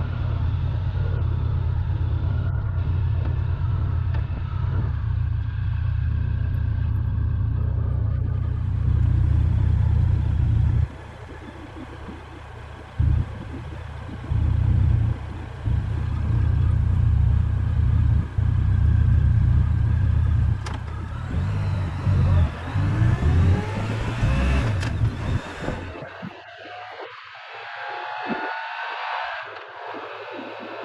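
Motorcycle riding at road speed, heavy wind buffeting on the microphone over the engine. Near the end the wind noise drops away, leaving a quieter engine note that rises and falls.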